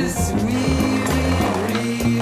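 Soundtrack music with sustained notes, and a skateboard's wheels rolling over pavement under it.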